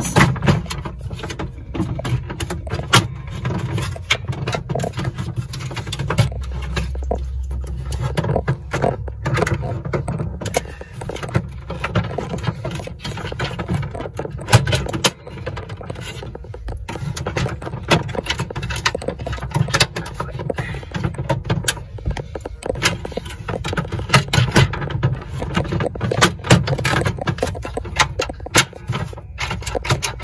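Plastic parts of a capsule toy vending machine being forced together by hand as its coin mechanism is pushed into a tight slot in the base: irregular clicks, knocks and scrapes over a low rumble of close handling noise.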